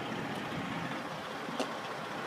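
Steady vehicle engine noise at a road scene, with a short click about one and a half seconds in.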